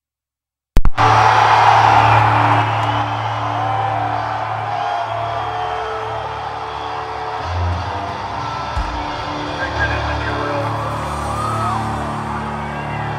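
Live rock-concert audience recording that cuts in suddenly out of complete silence about a second in. A crowd cheering, yelling and whistling over the band's sustained low droning tones. The cheering is loudest at first and then settles.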